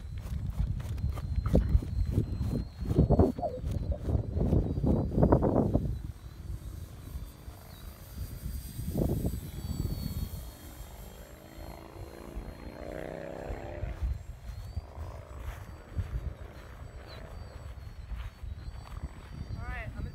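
An RC model airplane's motor running in flight, with a thin whine throughout; its pitch falls as the plane passes overhead about two-thirds of the way in. For the first six seconds, louder low rumbling buffeting on the microphone covers it.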